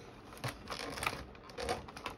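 Faint rustling and a few light clicks of cardboard and plastic packaging being handled as promo cards are taken out of a Pokémon collection box.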